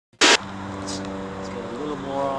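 A sharp pop, then a man's voice holding one low, drawn-out vocal sound that bends in pitch near the end.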